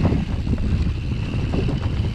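Wind rushing over the microphone and knobby mountain-bike tyres rumbling over a dirt trail at speed, with frequent short rattles from the bike as it hits bumps.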